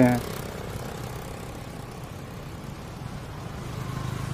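A road vehicle's engine running with a low, steady hum amid road traffic, growing a little louder near the end as a car approaches.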